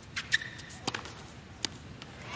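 Tennis ball being struck by rackets and bouncing on a hard court during a rally: four sharp separate pops, irregularly spaced. A brief high squeak, typical of a shoe on the court surface, comes about a third of a second in.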